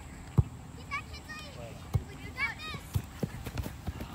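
High-pitched shouted calls from girls on a soccer field, a few short cries rising and falling, mixed with several short dull thumps, the loudest about half a second in.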